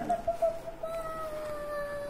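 A person humming one long, held high note that sinks slowly in pitch.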